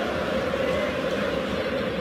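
Football stadium crowd: a steady din of many voices from the stands, with supporters cheering a goal.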